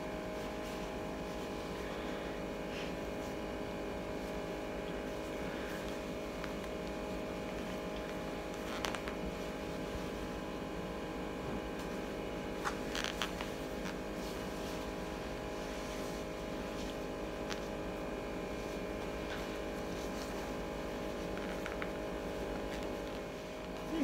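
A steady machine hum made of several held tones that never change, with a few faint clicks about nine and thirteen seconds in.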